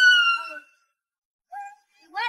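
A dog whining in distress: one long high-pitched whine that fades out about half a second in, then a short lower cry about a second and a half in.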